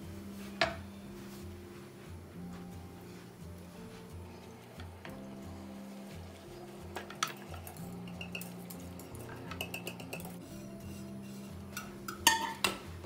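Soft background music with sustained low notes, and a few light clinks of a metal ladle against the pan and the glass baking dish as hot caramel syrup is ladled out.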